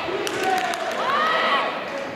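Taekwondo sparring in a large hall: high, drawn-out shouted calls rise and fall in pitch, with a few short sharp knocks from the fighters' clinch about a quarter of a second in.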